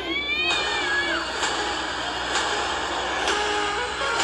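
A cartoon cat's long yowl, its pitch rising and then sliding down over about a second. Steady held tones with a few faint hits follow.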